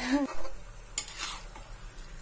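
A spatula stirring chicken and potato pieces frying in a pan, with a couple of short scrapes against the pan over a light sizzle.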